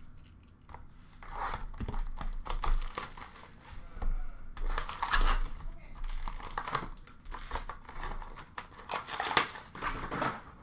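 Foil hockey card packs being handled and torn open from a cardboard box, wrapper crinkling and tearing in several bursts.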